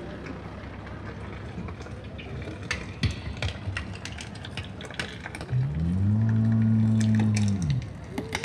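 Parade-street background with scattered clicks, then about five and a half seconds in a loud low moaning tone swells up in pitch, holds steady for about two seconds and falls away.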